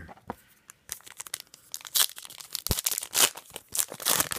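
Foil wrapper of a trading card pack being torn open and crinkled by hand: a quick run of crackles and rips starting about a second in.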